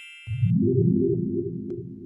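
An added sound effect: a bright, high chime rings on and cuts off about half a second in. Just before it stops, a low synthesized drone comes in and holds steady.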